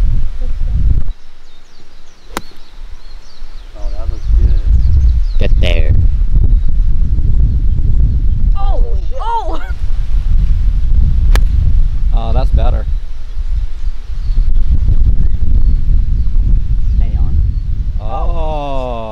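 Wind buffeting the microphone with a heavy low rumble, over scattered low voices. A single sharp click about eleven seconds in is a golf club striking a ball off the tee, and a similar click comes about two seconds in.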